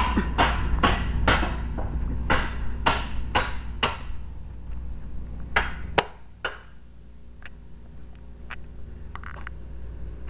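Footsteps on pavement, about two a second, over the low rumble of wind on the microphone, then stopping; a single sharp click about six seconds in, after which it is quieter with a few faint ticks.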